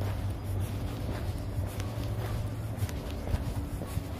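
Footsteps of sneakers on asphalt at an unhurried walking pace, about two steps a second, over a steady low hum.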